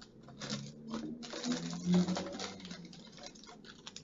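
Light, irregular rustling and small ticks from packaging being handled, with a few louder crinkles in the first half.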